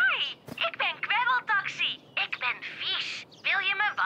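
High-pitched cartoon voice sounds with a thin, tinny quality, coming in short syllable-like stretches with brief pauses, without clear words.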